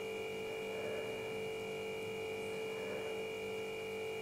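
A steady electrical hum made of several fixed tones over a light hiss, unchanging throughout.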